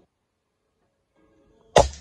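A single shot from a Condor mini PCP air rifle fitted with a suppressor: one sharp crack near the end, after near silence.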